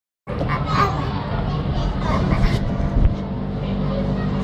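Children's voices and play-area hubbub over a steady low rumble.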